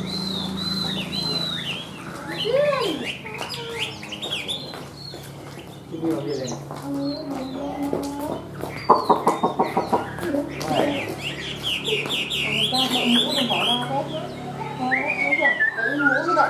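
Caged Chinese hwamei singing a varied song of whistled, swooping notes. About nine seconds in it gives a fast rattling trill, then repeated notes, and near the end a run of notes stepping down in pitch.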